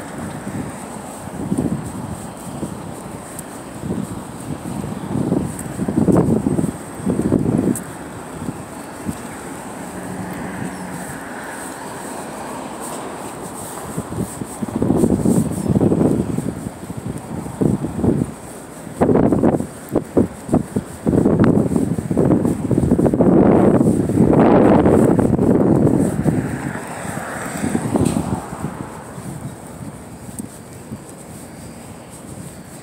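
Wind buffeting a phone's microphone outdoors in uneven gusts, loudest and most constant in the second half.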